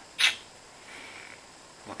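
A short hissing breath from a man pausing mid-sentence about a quarter second in, then quiet room tone until he starts speaking again near the end.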